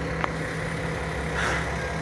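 An engine idling steadily, a low even hum, with a small click about a quarter second in and a brief hiss about one and a half seconds in.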